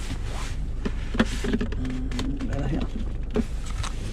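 Short clicks and handling knocks as a car's centre armrest storage lid is opened, over a steady low hum in the car cabin.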